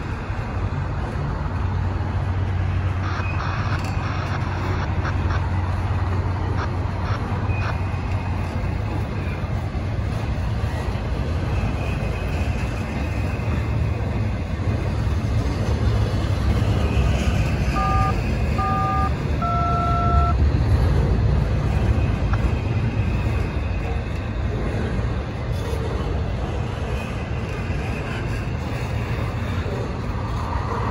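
Double-stack intermodal freight train's well cars rolling past, a steady low rumble of wheels on rail. About eighteen seconds in, three short electronic beeps sound in quick succession, the last one lower and a little longer.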